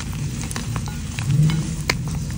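Hands crushing and squeezing soap-soaked gym chalk: irregular crumbly crunching and crackling with wet squishing, a louder crunch about one and a half seconds in and a sharp snap near the end.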